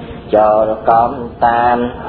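A male voice intoning a Khmer Buddhist dhamma recitation in a chanted style: steady, held syllables with short breaks between them.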